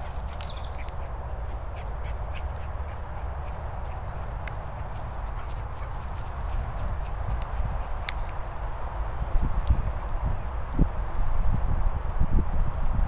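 A steady low rumble of handling noise on the handheld camera's microphone as it is carried over the grass, with a few irregular thumps in the last few seconds.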